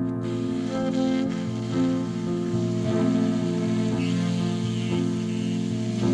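Electric stage keyboard playing a slow, soft passage of sustained chords, with no singing.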